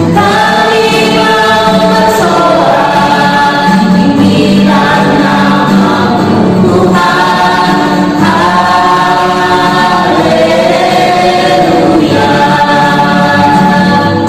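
A small mixed group of men and women singing an Indonesian Christian praise song together, in phrases of a few seconds each.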